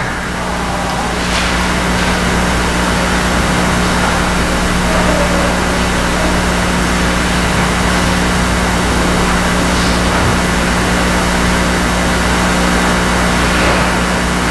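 Steady low electrical hum with hiss, an idle sound-system line waiting for the video's audio to start.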